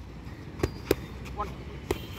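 Boxing gloves striking focus mitts in pad work: three sharp slaps, two in quick succession and a third near the end.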